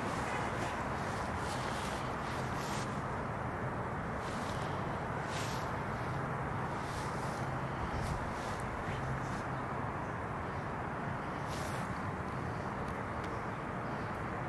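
Steady outdoor background noise with a low hum, and a few faint brief rustles.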